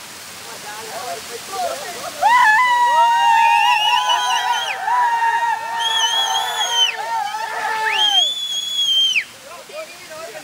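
Waterfall water rushing and splashing over rock, with several men yelling long drawn-out cries together from about two seconds in, the held voices overlapping and breaking off together about nine seconds in.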